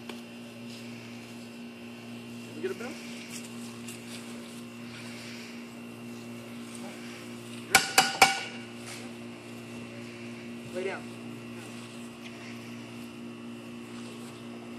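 Three sharp clicks in quick succession about eight seconds in, each with a brief ringing, over a steady low hum. A man's voice says 'lay' and later 'down'.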